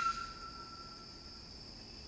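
A held whistled note fades out right at the start, leaving quiet room tone with a faint, thin, steady high tone.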